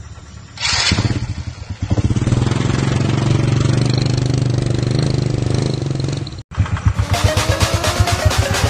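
A small motorcycle engine starts with a short burst under a second in, dips and picks up again, then runs steadily. After a sudden break near the end it is heard again under way, pulsing and rising in pitch as the bike accelerates.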